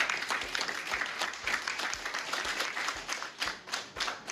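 A small group of people applauding, the separate hand claps distinct.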